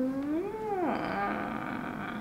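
A woman's drawn-out wordless thinking sound, a long 'hmmm', its pitch rising and then dropping sharply about half a second in, then held low and steady.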